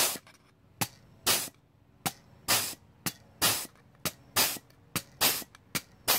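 Pneumatic offset flange tool punching a step into the edge of a sheet-metal panel. There are about a dozen quick strokes, each a sharp clack followed by a short burst of air hiss, in an uneven rhythm of roughly two a second.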